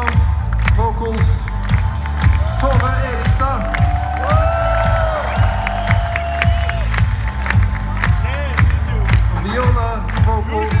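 Live band playing loud amplified music with a heavy bass beat, heard from among the audience, with the crowd cheering and shouting over it.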